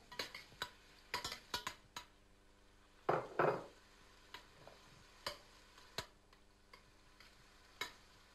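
A metal spoon stirring chopped leeks in a stainless-steel pot, with scattered sharp clicks as it knocks against the pot, and a louder scraping burst a little after three seconds in.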